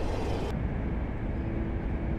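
A high-speed train running along the track: a steady low rumble, with a faint steady hum joining about a second in.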